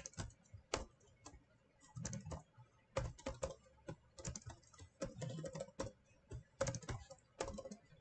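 Faint typing on a computer keyboard: irregular runs of key clicks, with a brief pause between about one and two seconds in.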